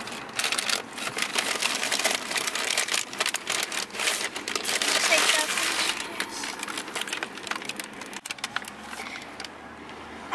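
Paper takeaway bags rustling and crinkling as they are opened and handled, busiest for the first six seconds and quieter after that.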